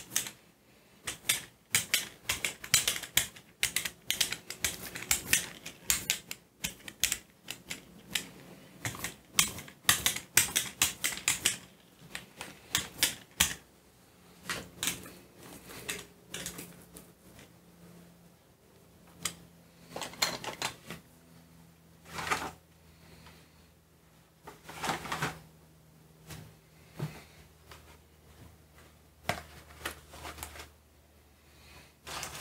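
Brayer rolling tacky metallic gold acrylic paint across a gel printing plate laid with stencils: a dense, rapid crackle of sticky clicks. After about twelve seconds it thins out to a few separate longer rolling strokes.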